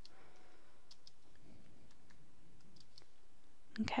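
Faint, scattered clicks of computer keyboard keys as a space and concatenation bars are typed into a formula.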